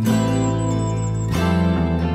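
Instrumental music: strummed acoustic guitar over held low notes, the chord changing about two-thirds of the way through.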